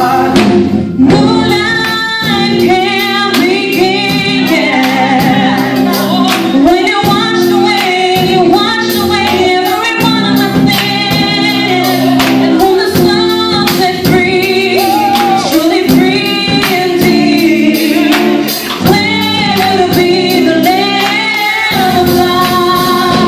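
A group of singers, mostly women's voices, singing a gospel song together over instrumental accompaniment with a steady beat.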